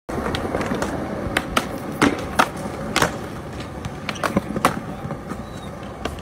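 Skateboard wheels rolling over smooth concrete, with several sharp clacks of the board and trucks hitting the ground over the first five seconds.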